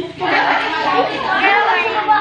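Many children's voices chattering and calling over one another in a large room.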